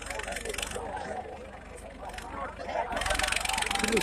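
Crowd voices over a John Deere 5310 tractor's diesel engine running with a steady low pulse, the engine smoking white from a turbo fault. About three seconds in, a louder rushing noise rises.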